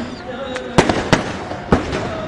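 Aerial fireworks exploding: a string of sharp bangs, three loud ones in the second half, over a continuous background din.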